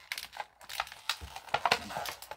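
Plastic toy accessories and packaging being handled: a run of small clicks and crinkles, the loudest about three-quarters of the way in.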